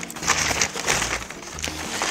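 White packing paper crinkling and rustling as a wrapped item is pulled from a cardboard box and unwrapped, a dense run of small crackles, with quiet background music beneath.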